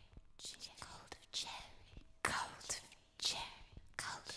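A woman whispering softly in a few short, breathy phrases with brief pauses between them.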